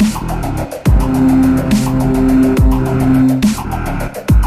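Bass-heavy dubstep: a deep kick drum about every 1.7 seconds, fast hi-hat ticks, and long, steady synth bass notes between the kicks.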